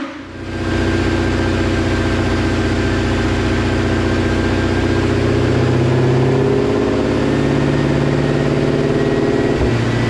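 2020 Ford Shelby GT500's supercharged 5.2-litre V8 running on a chassis dyno, its pitch climbing slowly as the revs rise, with a thin whine above it and a brief dip just before the end.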